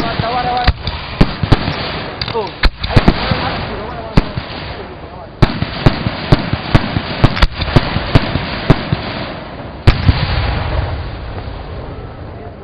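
Aerial fireworks display: a long, irregular barrage of sharp bangs from shells bursting, some in quick clusters, over a continuous hiss. The loudest bangs come about 3 seconds in and near 10 seconds, and the barrage thins out after that.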